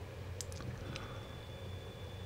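Quiet steady low hum with a few faint light clicks.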